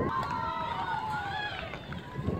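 Several voices calling out together in one long, drawn-out chant, the pitch sliding slowly downward, over faint outdoor background noise.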